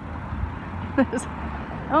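Steady low outdoor rumble, with a short voice sound and a click about a second in and a laugh starting at the very end.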